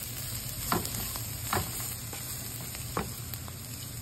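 Sliced bitter gourd sizzling steadily in oil in a frying pan as it is stirred with a spatula, with three sharp knocks of the spatula against the pan.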